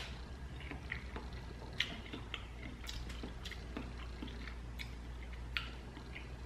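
A person chewing a mouthful of chicken noodle soup with soft noodles, faint mouth noises with a scattering of small clicks.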